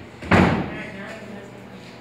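A single sudden loud thump about a third of a second in, dying away over half a second, followed by faint voices.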